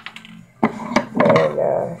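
A few sharp clicks from handling sewing things as thread is pulled out, then a short wordless vocal sound from a girl about a second in.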